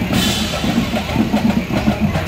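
High school marching band drumline playing a fast cadence of quick, steady drum strokes on snare, tenor and bass drums.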